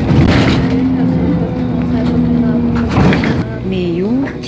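Inside a moving city bus: the engine's steady hum with road noise.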